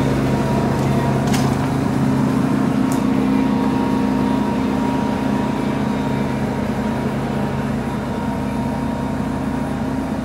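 Steady low mechanical hum of running machinery, with a faint higher whine over it, easing off slightly toward the end.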